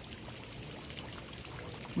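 Steady trickle of running water.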